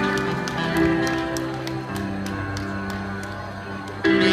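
Recorded dance music playing: a quieter passage of held chords over a light ticking beat, about three to four ticks a second. The music comes back in loud right at the end.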